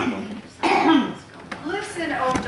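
A person coughing and clearing their throat, three short coughs in about two seconds.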